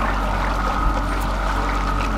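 Fishing boat's motor running steadily at slow trolling speed, a low hum with a thin steady whine above it, and water rushing along the hull.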